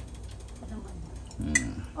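A wooden spoon stirring steaming soup in a skillet, giving a run of quick light clicks and ticks, with one sharper click about one and a half seconds in.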